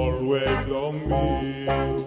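A song with a sung vocal line in Bislama over a backing band with steady bass notes.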